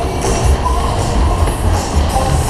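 Cars of a Kalbfleisch Berg-und-Tal-Bahn running fast around the undulating track, heard from on board as a heavy, pulsing rumble of wheels on rails. The ride's music plays underneath.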